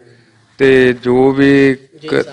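A man's voice drawing out two long syllables at a nearly steady pitch, starting about half a second in.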